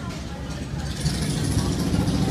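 Shop ambience: indistinct background voices over a steady low rumble, which grows a little louder about a second in.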